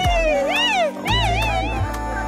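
Music: a single high voice sings a sliding, wavering run over a steady bass line. The bass drops out briefly near the middle of the run.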